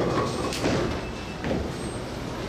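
Bowling pins clattering as the ball knocks them down for a light-shaker strike, with a sharp knock about half a second in, over the steady rumble of the bowling alley.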